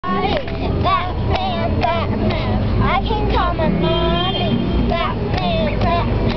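Girls' high voices chanting a hand-clapping rhyme, with their hand claps falling about twice a second, over a steady low rumble of traffic.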